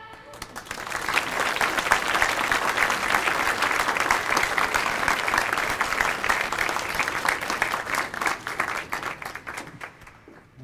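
Audience applauding at the end of a song. The clapping builds over the first second, holds steady, and dies away near the end.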